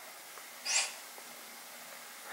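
A single short, hissy puff of breath, like a sniff or quick exhale, a little under a second in.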